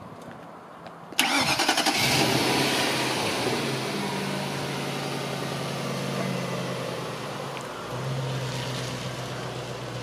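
A 2002 Ford Thunderbird's 3.9-litre V8 starting: the starter cranks briefly about a second in, the engine catches and flares up, then settles to a steady idle. Near the end the car pulls away slowly.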